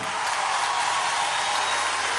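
Crowd applauding and cheering, a steady even wash of noise.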